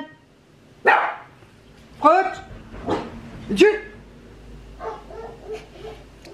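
A small dog barking: about four sharp barks in the first four seconds, then a couple of fainter ones. It is alert barking at a noise outside, which the owner puts down to someone smoking on a nearby balcony.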